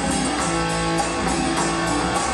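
Live rock band playing an instrumental passage: a drum kit with steady cymbal strokes under sustained electric guitar and acoustic guitar.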